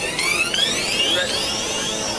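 Several high electronic tones gliding upward together, with one sweeping arc near the end: a synth build-up opening a dance track.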